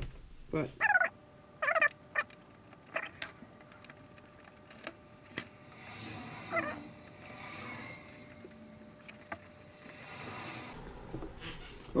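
A few short mumbled voice sounds over an opened VCR's tape transport, with scattered faint clicks and a quiet whirr from the mechanism.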